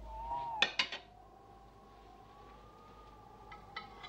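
Crockery clattering in a short burst about half a second in, the loudest sound, with a few lighter clinks near the end. Under it a steady high whistle-like tone runs throughout, wavering slightly in pitch.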